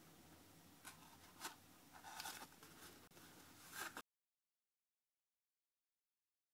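Near silence: faint room tone with a few soft ticks, cutting to dead silence about four seconds in.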